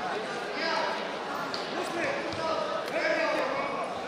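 Voices calling out and shouting, echoing in a large sports hall, with a few dull thumps of wrestlers' hands and feet on the mat.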